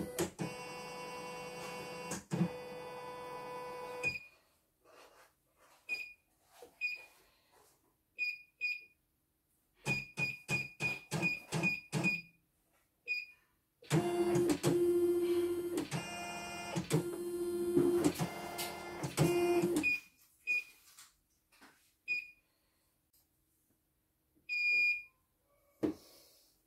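A computerized embroidery machine being test-run after a repair to cure its rough-running, snoring noise. Its control panel beeps at each button press, and its motors run with a steady whine in short bursts: a few seconds near the start, a quick series of clicks around the middle, and a longer, louder run of about six seconds later on.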